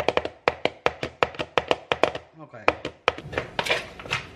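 Metal spoon clacking rapidly against a green plastic mixing bowl while tossing cut raw potato fries, about six knocks a second with a short pause a little past the middle.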